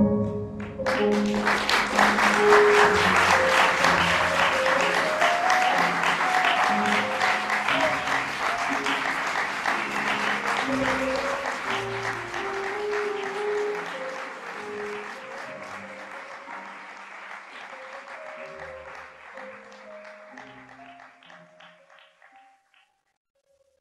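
Audience applause breaks out about a second in over slow instrumental music, and both fade away gradually toward the end.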